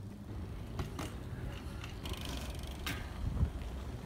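BMX bike riding onto and along a wooden rail: tyres rolling on pavement and wood, with a few sharp knocks about one second in and again just before three seconds.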